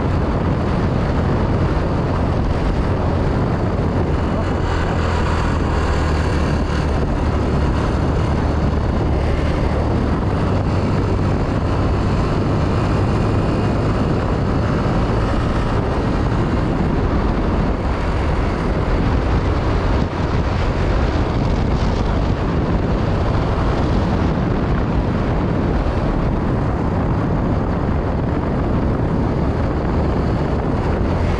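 Small motorcycle riding along at a steady speed: its engine runs evenly under a constant low rumble of wind and road noise.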